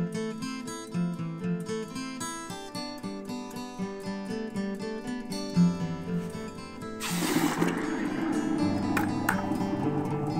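Acoustic guitar music throughout. About seven seconds in, a sudden loud hissing and bubbling starts as a hot casting flask is quenched in a bucket of water, breaking up the investment, with a couple of sharp crackles.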